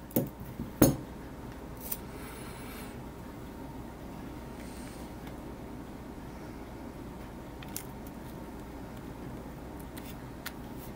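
A few sharp clicks in the first second, the loudest about a second in, and a brief scratchy rasp soon after, as tape over a hole in a wooden strip is trimmed and pressed down by hand; after that mostly steady low background noise.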